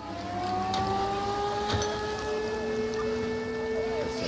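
An engine running steadily, its pitch rising slightly over the first two seconds and then holding, with a few scattered crackles and pops from the burning fire.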